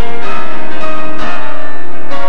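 Grand piano played solo in a classical style: loud, full chords ringing out, with fresh chords struck twice.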